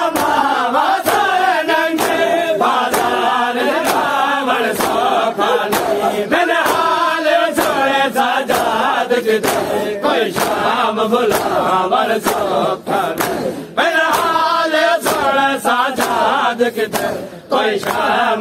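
Men's voices chanting a noha together, with the slaps of hands striking bare chests in matam on an even beat of about two a second.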